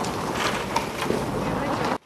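Snow and ice being shoved off the edge of a pitched roof with a hand tool: a steady rushing noise of sliding, falling snow.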